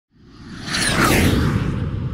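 Cinematic whoosh sound effect with a deep rumble underneath, swelling up over the first second, with a few thin tones sweeping downward in pitch.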